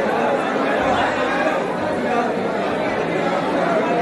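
Crowd chatter: many people talking at once in overlapping voices, a steady hubbub with no single speaker standing out.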